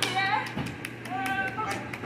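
Sparse, uneven hand clapping from a few people, about five or six claps a second at most, over voices talking.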